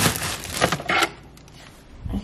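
A plastic freezer bag rustling and crinkling as it is handled in a freezer drawer, for about a second.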